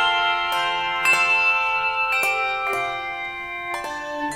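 Handbell choir ringing a tune: a new bell note or chord is struck every half second or so, and each note rings on under the next. The playing gets gradually softer through these seconds.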